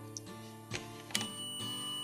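Background acoustic guitar music. About a second in, a sharp click as the relay pulls in, and at once a digital multimeter's continuity buzzer starts a steady high beep, the sign that the relay contacts have closed.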